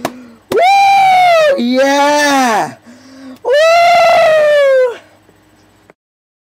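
A man yelling three long, drawn-out exclamations ('Yeah!'), each swelling up and then falling away in pitch, in an over-the-top ecstatic imitation of the Double Rainbow man's cries.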